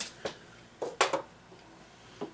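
Beer being sipped from glasses: a few short, soft sipping sounds, the sharpest about a second in.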